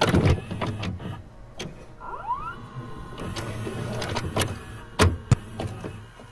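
VCR mechanism sound effect: clunks and clicks, with a short rising motor whirr about two seconds in and two sharp clicks a moment apart near five seconds.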